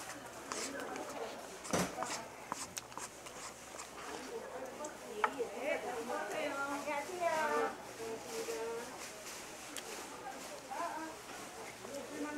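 Indistinct speech, with scattered light clicks and one louder knock about two seconds in.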